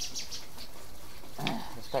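Small birds chirping, a few short high chirps near the start, over a steady outdoor background, with one brief breathy sound about a second and a half in.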